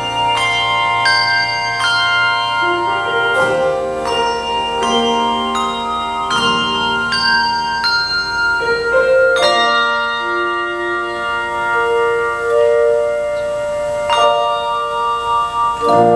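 Handbell choir ringing a piece: tuned handbells struck in chords and melody notes, each note ringing on and overlapping the next.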